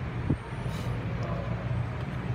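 Steady low background hum, with one brief knock about a third of a second in and a short hiss a little before the one-second mark.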